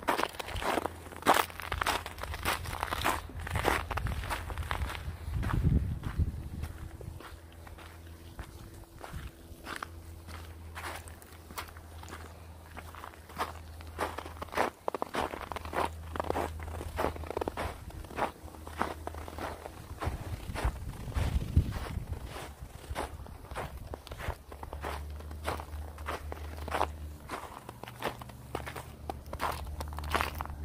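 Walking footsteps crunching on a trail of thin snow over dirt, at a steady pace of about two steps a second, with a low steady rumble underneath.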